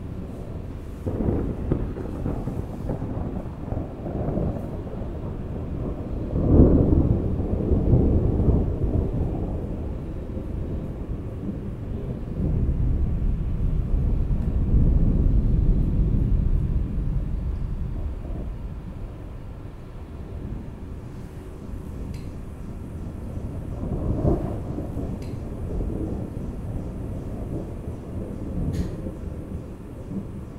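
A deep, low rumble that swells and fades in several long surges, loudest about seven and fifteen seconds in.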